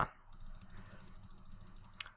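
Faint, rapid, even clicking of a computer mouse scroll wheel being rolled, about twenty small ticks a second.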